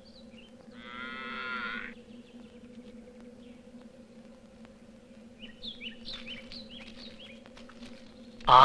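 A cow moos once, about a second long, about a second in. Near the end a bird gives a run of short downward chirps, over a faint steady hum.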